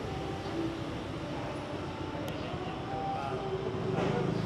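Steady low rumble of outdoor urban background noise with a few faint wavering tones, no distinct events.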